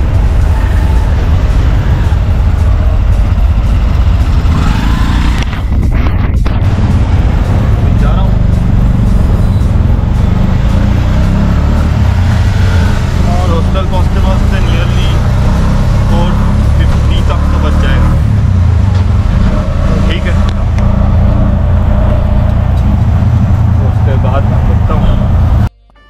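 Auto-rickshaw (tuk-tuk) engine and road noise heard from inside the moving open cab: a loud, steady low rumble that cuts off suddenly just before the end.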